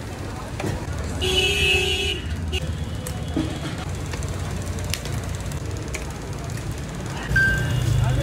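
Street traffic rumbling steadily, with a vehicle horn sounding for about a second, a second in.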